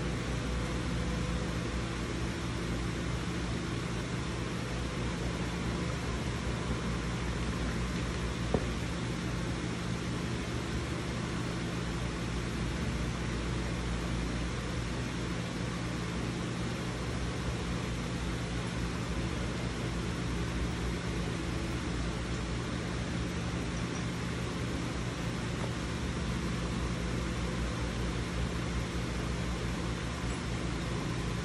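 Steady low hum and hiss of running machinery, with one short click about eight and a half seconds in.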